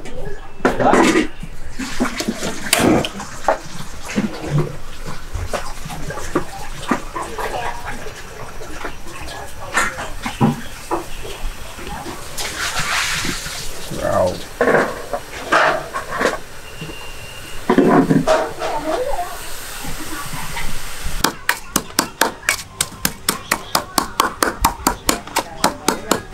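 Voices and scattered kitchen clatter, then, near the end, a wooden pestle pounding chili in a bowl: a fast, even run of knocks, about four to five a second.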